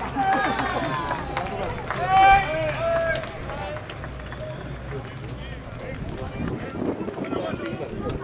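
Voices calling out across a ballfield, loudest about two seconds in, then a low murmur of voices.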